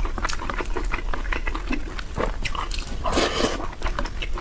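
Close-miked chewing of a mouthful of braised pork and rice, with many short wet mouth clicks and smacks. A louder wet mouth sound comes about three seconds in.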